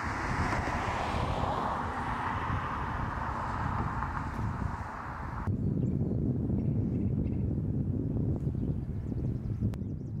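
Outdoor ambience: wind rumbling on the microphone throughout, with a hiss of passing traffic in the first half. The traffic hiss cuts off abruptly about five and a half seconds in, leaving the wind rumble and a few faint chirps.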